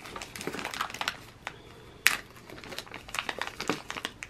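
FedEx Pak mailer crinkling and rustling as hands pull and work it open, with irregular sharper crackles, the loudest about halfway through and another near the end.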